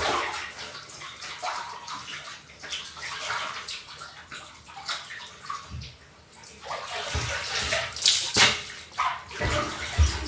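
Water splashing and spattering onto a wet tiled floor in uneven gushes, with a quieter lull midway and louder splashes near the end.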